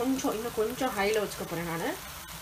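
A person speaking, with prawns in thick masala gravy sizzling in a frying pan underneath.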